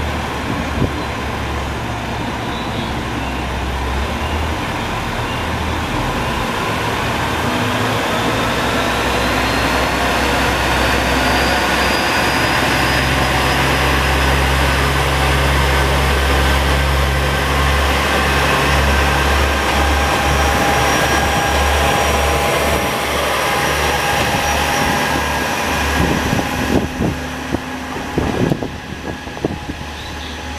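KiHa 47 diesel railcar's engines working under load as the two-car train pulls away and accelerates past, a whine climbing slowly in pitch as it gathers speed. Near the end the wheels knock over track joints.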